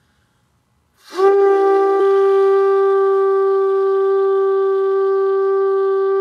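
A shofar, a curved animal-horn trumpet, blown in one long steady blast on a single note, starting about a second in and held without a break.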